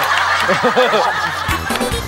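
Men chuckling and laughing over light background music.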